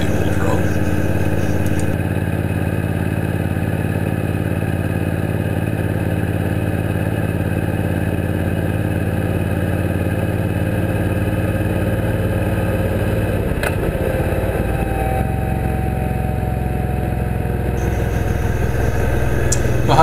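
Suzuki Boulevard C90T V-twin cruiser engine running steadily at road speed. There is a single sharp click about fourteen seconds in, and the engine note deepens soon after.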